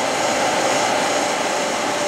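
Webster Bennett 48-inch vertical turret lathe running, its chuck table turning slowly under power: a steady machine hum with an even whine in the middle of the range.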